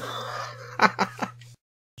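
A draw on a Smok Guardian III vape pipe with a Baby Beast sub-ohm tank fired at 75 watts: a hiss of air through the tank, then a few short sharp crackles. The sound cuts off to silence about one and a half seconds in, over a steady low hum.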